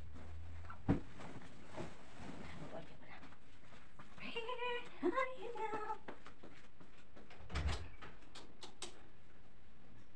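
Bed-making and room sounds: a single thump about a second in, a short high-pitched voice-like call in a few stepped notes in the middle, then a low knock and a few light clicks near the end.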